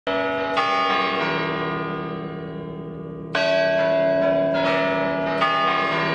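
Bell-like struck notes on the soundtrack, about five strikes: one at the very start, one about half a second in, a stronger one a little after three seconds and two more near the end. Each rings on with a long decay, so the notes overlap.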